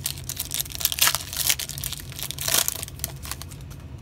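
A stack of glossy trading cards handled close to the microphone: the cards slide and scrape against one another in a run of crinkling, scratchy rustles, busiest in the middle.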